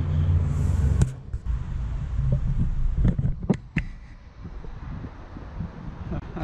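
A vehicle engine's low, steady rumble from street traffic cuts off abruptly about a second in. A few sharp knocks and clicks follow, typical of the camera being handled, over a quieter background hiss.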